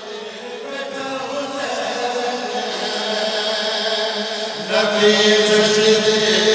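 Men chanting a devotional qasida refrain through a PA system in long, drawn-out held notes, faint at first and swelling louder about five seconds in.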